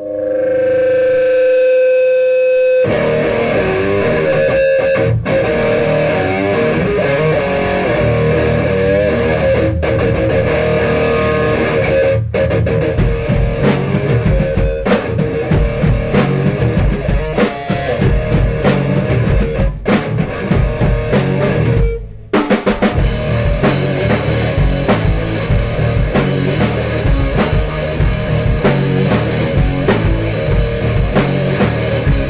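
Instrumental opening of a grunge/alternative rock song: a sustained chord swells in, then electric guitars and drum kit come in together about three seconds in. The band drops out for a moment at about twenty-two seconds and comes straight back in.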